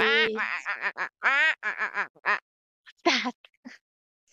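Recorded duck quacking, played back from a lesson audio clip: a quick run of about eight short quacks over roughly two and a half seconds. A brief voice sound follows near the end.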